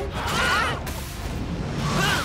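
Cartoon battle sound effects: a steady, dense rush of action noise, with a short high-pitched cry about half a second in.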